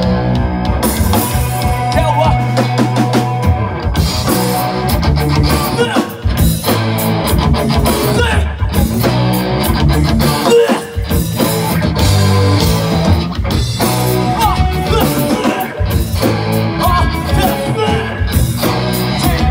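Live rock band playing: electric guitars and a drum kit, with a singer's vocals over them. A few short stops break the playing.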